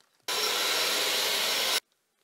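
A steady, even hiss lasting about a second and a half, cutting in and out abruptly between moments of dead silence.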